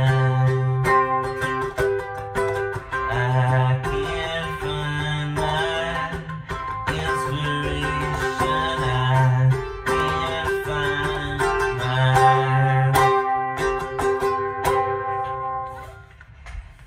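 Ukulele strummed in a steady rhythm, the chords changing about once a second, ending in the last moment.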